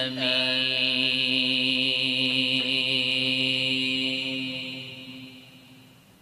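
A man reciting the Quran in Arabic, holding one long melodic note at a steady pitch that fades away about five seconds in.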